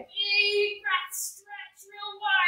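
A woman's high voice making sung, drawn-out sounds with no words: a held note at first, then shorter rising and falling pieces, with a brief breathy hiss a little past halfway.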